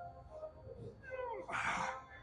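A man straining to drive a heavy barbell back squat up out of the bottom: a short vocal groan falling in pitch about a second in, then a hard, forceful breath out near the end.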